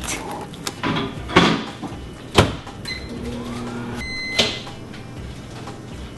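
Knocks and clatters of a bowl going into a microwave oven, with two short, high electronic beeps from its keypad about a second apart as it is set to cook the rice-cake dough for one more minute.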